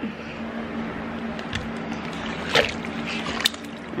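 A few light knocks and scrapes as a countertop grill's greasy plate is handled over a crock pot, over a steady hum.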